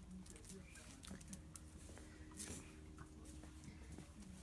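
Very faint scattered scuffs and light clicks over a low steady hum.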